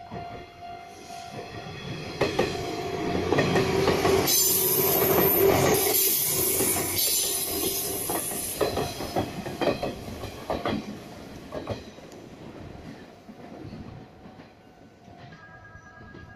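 JR 185 series Odoriko limited express running through the station without stopping. Its noise swells to a loud hissing peak as the cars draw level, then breaks into a run of wheel clicks over the rail joints and fades away.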